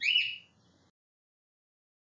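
A short, high-pitched chirp lasting under half a second at the very start, rising and then falling in pitch.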